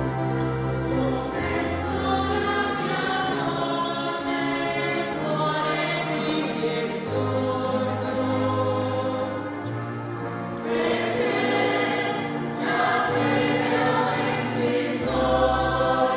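Choir singing a slow hymn over sustained low accompaniment notes.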